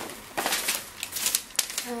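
A paper receipt rustling and crinkling as it is handled and unfolded, in a series of short, quick bursts.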